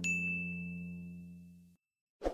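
A bell-like notification ding at the start, ringing on one high tone for about a second and a half. Under it the last low chord of the background music fades out to silence.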